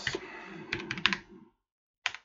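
Computer keyboard typing: a quick run of about five keystrokes just under a second in, as a word is typed into a web browser's address bar.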